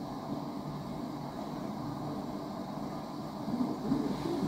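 Steady low room hum with no distinct event.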